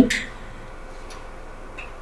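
Quiet room tone with a few faint ticks; the last syllable of a woman's voice trails off at the very start.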